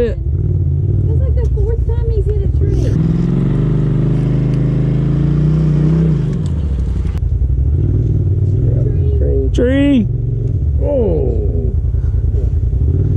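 Side-by-side UTV engine running on a trail. About three seconds in, the engine revs up and holds a higher, steady pitch under load, then drops back near the six-second mark. A voice breaks in briefly near the end.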